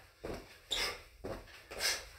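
Feet landing and scuffing on carpet as two people do plank jacks from push-up position, jumping their feet apart and together. There are short, soft noisy hits about twice a second.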